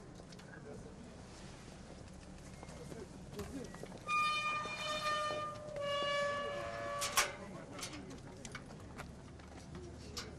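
A horn sounds in two long, steady blasts of slightly different pitch, each about a second or more, starting about four seconds in, followed by a sharp knock. Background voices and street noise run underneath.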